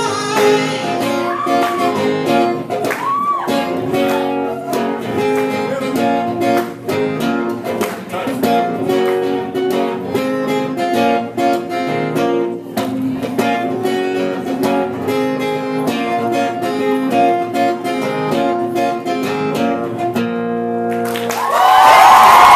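Acoustic guitar strummed in a steady rhythm, with a little singing in the first few seconds, closing on a held final chord about twenty seconds in. An audience starts cheering just before the end.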